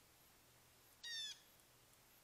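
Blue jay giving one short, slightly falling call about a second in.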